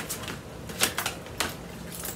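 A deck of tarot cards being shuffled by hand: a few sharp card snaps and clicks, the loudest a little under a second in.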